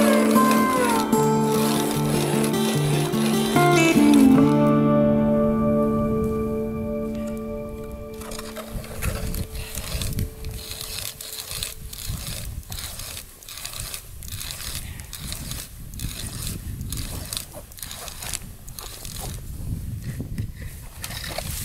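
Music fades out over the first eight seconds or so. Then a hand ice auger cuts through lake ice, a rhythmic scraping crunch that repeats with each turn of the crank.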